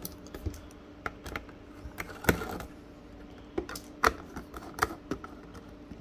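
Screwdriver backing small screws out of the back cover of a controller housing: irregular light clicks and ticks of the driver tip and screws, with sharper clicks a little over two seconds in and again about four seconds in.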